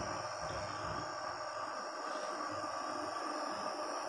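Steady whir of a cooling fan with faint, steady high electronic tones from a power inverter driving an induction plate cooker under a load of about 1600 watts.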